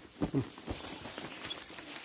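Footsteps through pasture grass: a few soft thuds in the first second, then light rustling of grass and brush.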